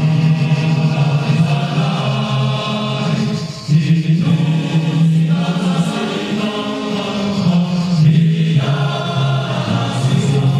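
A man's voice chanting in long held, low notes through a microphone, with short pauses between phrases about four and eight seconds in.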